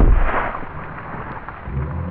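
A sudden loud crash, followed by a rushing, noisy tail that dies away over about a second.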